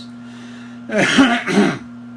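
A man clearing his throat: two short, harsh bursts about a second in.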